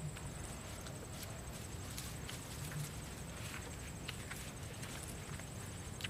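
Irregular light clicks and cracks, a few a second, as brittle velvet tamarind pods and their dry stems are picked from the cluster and cracked open by hand and mouth.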